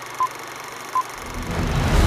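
Film countdown-leader sound effect: two short, high beeps less than a second apart over a steady hiss. A deep rumble then swells in just after a second and keeps growing louder.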